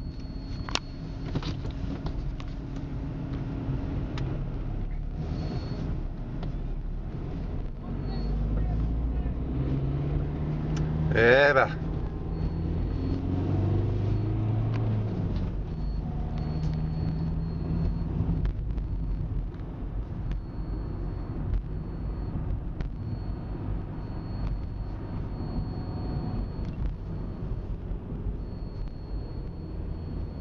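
Steady low rumble of a motor vehicle running, with road noise. About eleven seconds in, a brief, loud pitched sound wavers up and down.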